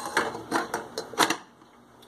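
Glass saucepan lid with a metal rim being set onto a stainless steel pot: about five light clinks and clicks in the first second and a half as it settles.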